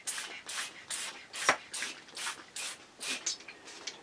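A trigger spray bottle misting rubbing alcohol onto a full-face gas mask: a quick series of short hissing sprays, about two to three a second.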